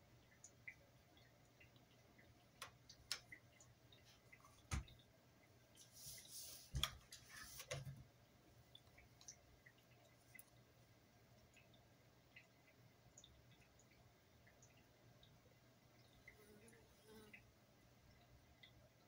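Near silence with faint scattered clicks as makeup brushes, an eyeshadow palette and a hand mirror are handled. A few soft knocks and a brief rustle come about five to eight seconds in.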